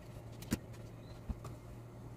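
Two small handling clicks from a blood glucose meter and test strip being handled by hand, the sharper one about half a second in and a duller knock a little past a second, over a steady low hum.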